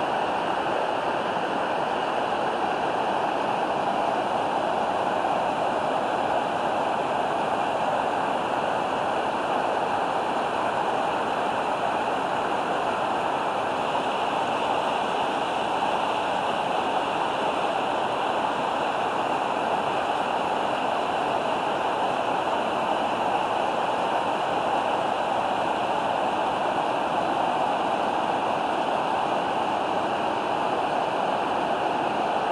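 River water rushing and churning steadily as the Middle Fork of the Popo Agie River pours into the Sinks, an underground limestone cavern. It is a loud, unbroken rush that does not change.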